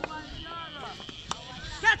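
A single sharp knock of a cricket bat striking the ball, followed near the end by a loud shout from a player.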